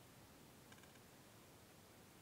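Near silence: room tone, with one faint brief tick about three-quarters of a second in.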